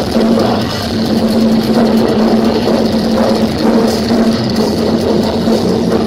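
A death metal band playing live and loud: distorted electric guitars holding a low note over fast, dense drumming.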